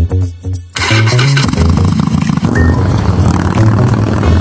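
Background music with a steady bass line; about a second in, a V-twin cruiser motorcycle's engine comes in loud with a dense, pulsing low rumble and keeps running beneath the music.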